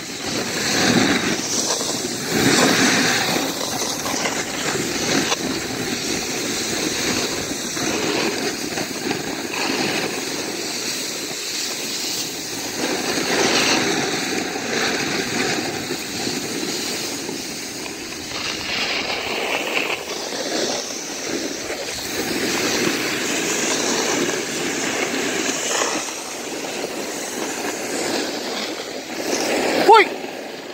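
A board riding in a halfpipe: a steady rushing, scraping noise that rises and falls in waves.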